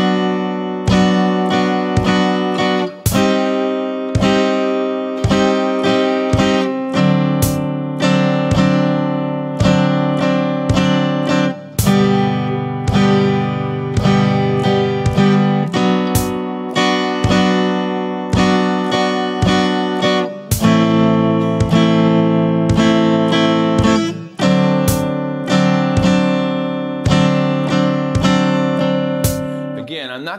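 Clean electric guitar played with a pick, strumming a slow chord progression that mixes open-string and barre chords in steady eighth notes at 55 beats a minute. The chord changes every few seconds, and the playing dies away near the end.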